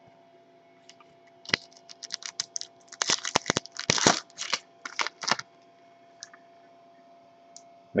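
Foil trading-card pack wrapper being torn open and crinkled by hand: a quick run of sharp crackles lasting about four seconds, starting a second and a half in.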